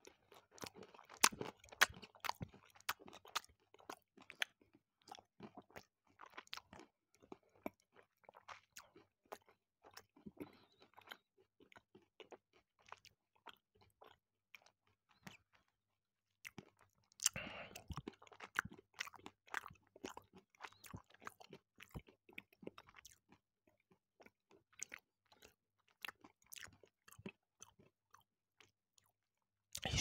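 Close-miked chewing of a milk chocolate bar with whole hazelnuts and almonds: many small, irregular crunches and mouth clicks as the nuts are bitten through, with a denser flurry of crunching a little past the middle.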